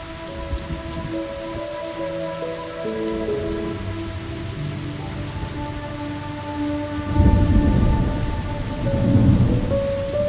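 Steady rain mixed with slow, sustained music notes that change pitch now and then. About seven seconds in, a low rumble of thunder comes in and swells twice, becoming the loudest sound.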